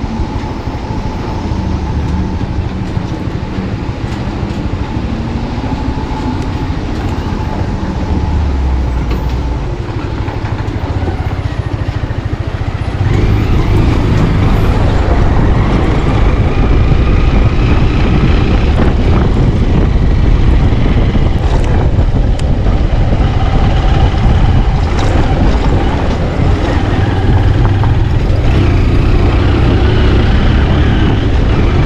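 Motorcycle engine running steadily while riding a rough dirt road, with road and wind noise. About 13 seconds in the sound steps up, louder and fuller, and stays so.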